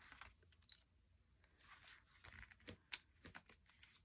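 Near silence, with a few faint small clicks and light paper rustles as a pick-up tool lifts adhesive gems off their sheet. The clicks are scattered through the second half, the clearest about three seconds in.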